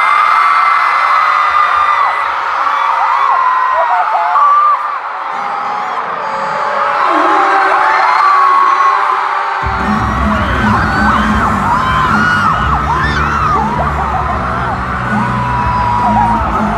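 Large arena crowd of fans screaming and whooping in high voices. About ten seconds in, loud pop music with heavy bass starts over the PA while the screaming goes on.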